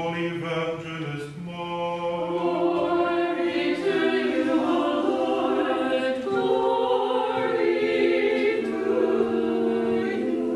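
Unaccompanied Orthodox liturgical chant sung by a small choir in long, held notes. For about the first four seconds a lower voice holds one steady note beneath the melody, then the voices move higher.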